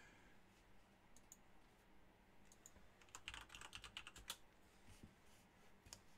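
Near silence, with a short run of faint computer-keyboard typing clicks about halfway through.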